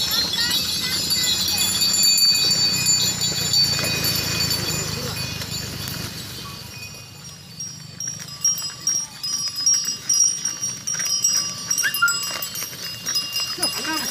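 Bullock carts laden with sugarcane passing close by, pulled by pairs of bullocks: a rumble of cart and hooves, louder in the first half. About eight seconds in it gives way to a run of sharp knocks.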